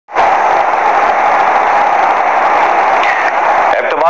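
Breaking-news sting of a TV news broadcast: a loud, steady rushing noise effect that starts abruptly and holds for over three seconds before giving way to the anchor's voice.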